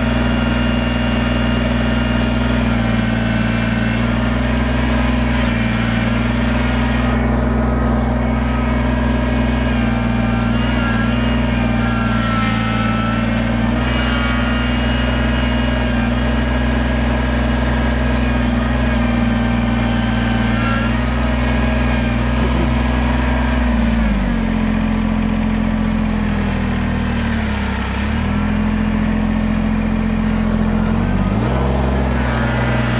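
Kubota BX compact tractor's three-cylinder diesel running steadily under load as the backhoe bucket is curled in to drag the mired tractor backwards through the mud. A higher whine comes and goes midway. The engine pitch sags twice near the end as it lugs under the load.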